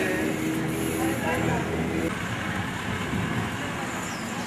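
Several people talking and greeting one another outdoors, over a steady low background rumble. A held steady tone sounds under the voices and stops about halfway through.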